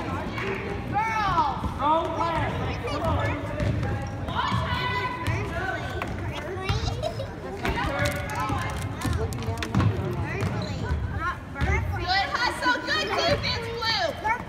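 Basketball game on a hardwood gym floor: a ball being dribbled and sneakers squeaking as players run, under spectators' voices echoing in the gym.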